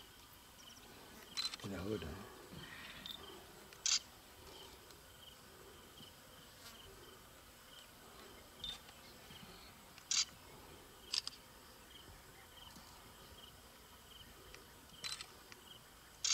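Faint insect chirping, a thin high pulse repeating about twice a second, with a few sharp isolated clicks scattered through.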